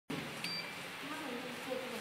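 Indistinct voices talking, with a short, high electronic beep about half a second in.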